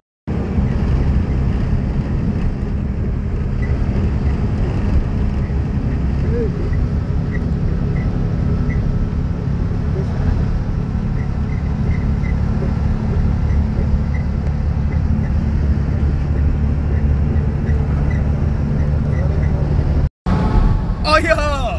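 Steady low rumble of a vehicle in motion, loud and even throughout.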